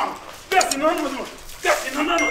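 Person's voice crying out in two short, strained bursts, not words, during a scuffle: the first about half a second in, the second near the end.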